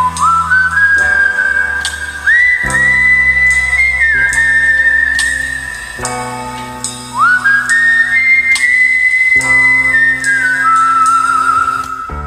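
A whistled melody over a backing track. Slow, long held notes slide up into each phrase, with a waver near the end, over bass, chords and a light steady beat.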